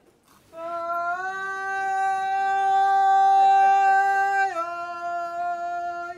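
A long held pitched note, rich in overtones, starting after a brief pause, stepping slightly up in pitch about a second in and dropping back a little near the end.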